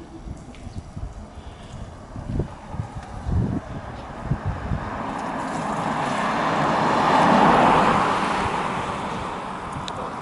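A Toyota RAV4 SUV driving past on the road: its tyre and engine noise swells over several seconds, is loudest a little after the middle and then fades away. Before that, low gusty rumbles of wind hit the microphone.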